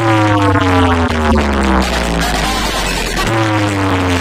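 Electronic DJ competition mix played loud through a stack of large woofer cabinets. A heavy bass tone sits under a falling synth tone with overtones that slides down for about two seconds, then starts again a little after three seconds in.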